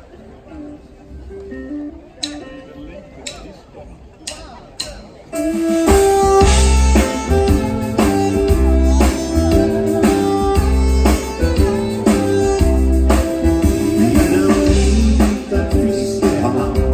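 A live band with saxophone, electric guitar and drum kit comes in loud, about five seconds in, with a steady beat. Before that there are a few quieter seconds with a few sharp clicks.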